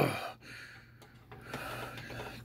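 A man's voice: the end of a spoken word dies away, then a quiet, breathy, drawn-out "oh!" comes near the end, a mock gasp of surprise.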